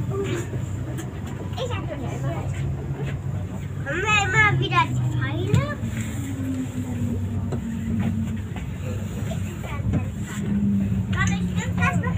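Tram running heard from inside the passenger compartment, a steady low hum with a faint tone that slowly shifts in pitch as it pulls away and rolls along. Passengers' voices come in briefly about four seconds in and again near the end.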